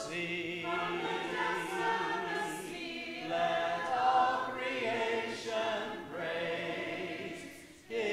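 A church congregation singing a hymn a cappella in parts, with no instruments, on the line "from the depths of the sea, let all creation praise His name." Near the end the singing dips briefly at the close of the phrase.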